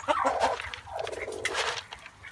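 Broody Silkie hen growling in her nest box as a hand brings feed close: a raspy, unpitched grumble, the defensive sound of a hen guarding her nest.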